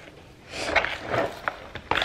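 Hands tossing seasoned raw oxtails with chopped peppers and scallions in a plastic bowl: wet rustling and shuffling of the pieces from about half a second in, with a couple of sharp knocks against the bowl near the end.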